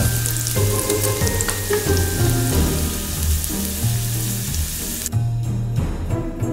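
Slices of beef frying in olive oil on a hot oven tray: a steady sizzling hiss with small pops, which cuts off suddenly about five seconds in. Background music plays underneath.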